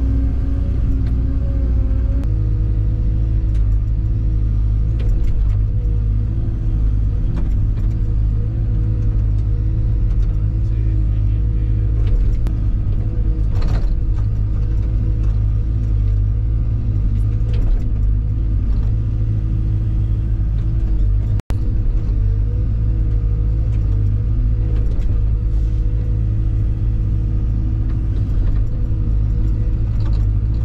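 CAT 314 excavator's diesel engine and hydraulics running steadily under digging load, heard from inside the cab, with the tone shifting a little as the controls are worked. The sound cuts out for an instant about two-thirds of the way through.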